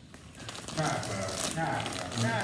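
Crackly plastic handling noise as the green flip-top cap of a plastic spice jar of dried oregano is lifted open, over a low voice talking quietly.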